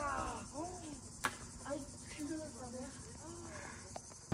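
Steady high chirring of crickets in summer countryside, with faint distant voices calling out in short rising-and-falling cries and a single sharp click just over a second in.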